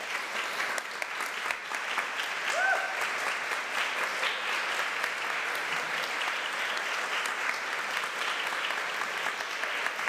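Congregation applauding steadily, a dense patter of many hands clapping that starts at once and keeps up. A brief rising tone sounds through the clapping about two and a half seconds in.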